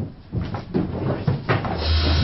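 A few short knocks, like wooden doors, the loudest about one and a half seconds in, then a low rumble setting in near the end.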